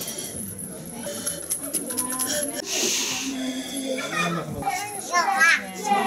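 Children's voices and chatter around a busy table, with a brief rasping noise about three seconds in and a louder high child's voice near the end.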